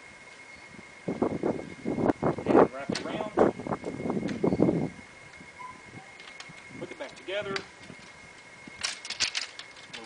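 A man's indistinct speech for several seconds, then a few more words, with a quick cluster of sharp clicks near the end from handling a folded wooden easel and its bungee cord.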